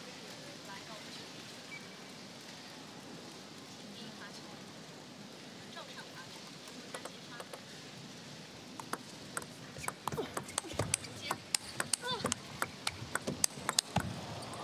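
Table tennis rally: the ball clicking sharply off the bats and the table several times a second. It starts about nine seconds in, after a quiet stretch of hall ambience.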